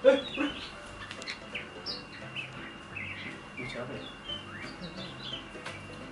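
Birds chirping: many short, quick chirps, rising and falling, scattered throughout over a faint low background hum.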